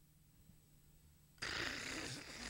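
A long, breathy rush of air blown into a close microphone, starting about a second and a half in: a mouth-made bong-hit sound, mimed as part of a comedy routine.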